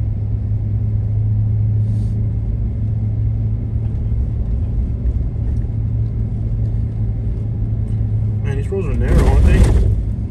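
Steady low road and engine drone inside a moving vehicle's cabin while driving. A louder rushing sound with some wavering pitch rises near the end and cuts off.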